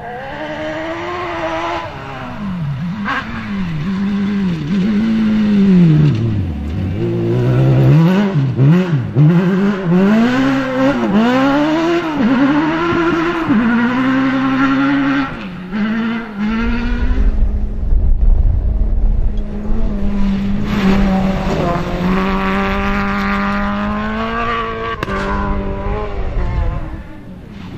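Rally cars at full throttle on a dirt-and-grass stage. Engines repeatedly rev up and drop away as the drivers shift and lift. About two-thirds of the way through, another car takes over with a steadier high engine note over a deep rumble, its revs climbing again near the end.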